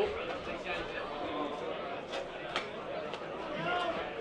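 Indistinct background voices at a football ground, low chatter under an open commentary mic, with two sharp clicks a little past halfway.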